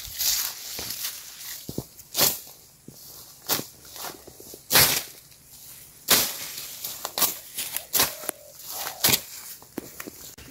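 Footsteps through dry leaf litter and undergrowth, with leaves and branches brushing past: irregular rustling broken by sharp snaps about once a second.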